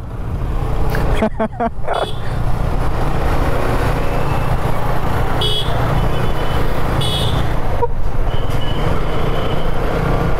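Wind buffeting the microphone of a motorcycle riding through town at about 40–45 km/h, a steady low rumble over the engine and traffic. Two brief high horn toots sound about five and a half and seven seconds in.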